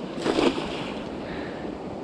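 A thrown cast net hits the surface of a creek with a short splash about a third of a second in, its weighted rim slapping the water, followed by a steady wash of water and wind noise.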